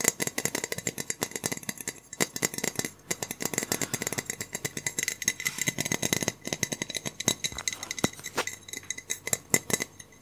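Fast, irregular tapping and clicking by hands close to the microphone: many small sharp clicks a second, with a few short pauses.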